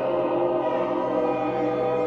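Slow music of long held chords sung by a choir, the chord shifting gently now and then without any beat.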